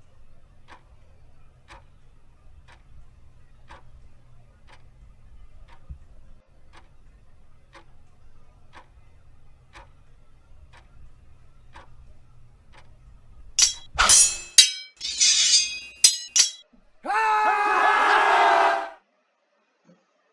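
Film soundtrack: sharp ticks like a clock ticking, about once or twice a second, over a faint low rumble. About fourteen seconds in, a cluster of loud sharp crashes breaks in, followed by a loud pitched sound lasting about two seconds that dips slightly in pitch and then stops.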